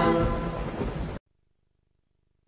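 Closing notes of a TV station ident jingle, sung voices without instruments over a rain sound effect. It cuts off suddenly about a second in, leaving near silence.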